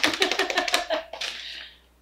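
A rapid, even run of taps like a hand-drummed drum roll, building the suspense before a winner is named. It fades out about a second and a half in, with a faint voice under it.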